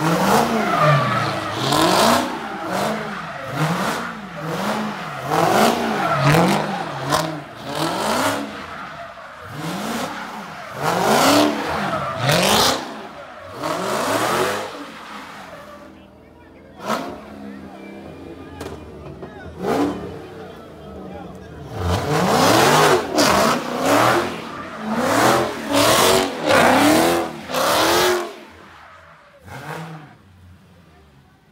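Dodge Challenger doing donuts on asphalt: the engine revs up and down about once a second while the tyres squeal. A quieter lull comes a little past the middle, then a second bout of revving and tyre squeal.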